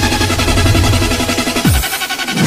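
Electronic intro music with a steady beat and deep bass; near the end a bass tone slides steeply down.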